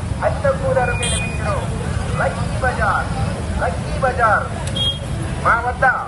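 Many motorcycle engines running together in a dense, steady rumble. Over it, people shout in short calls that come again and again.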